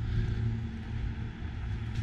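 Outdoor background of an open parking lot: wind rumbling on the microphone over a faint, steady low hum like a distant engine.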